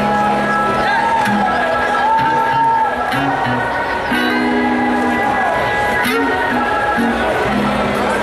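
Live band playing: acoustic guitar with drums and electric guitar, with a voice over the music, recorded from among the crowd.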